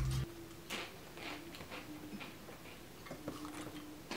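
Faint, irregular crunches and clicks of a person eating potato chips.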